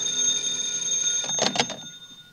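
Telephone bell sound effect ringing for about a second and a half, then a few clicks as the receiver is picked up.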